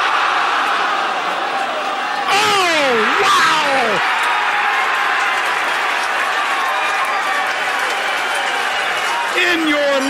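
A golf gallery roaring and cheering as the ball drops into the cup, the roar jumping louder about two seconds in, with loud shouts that fall in pitch over the next couple of seconds.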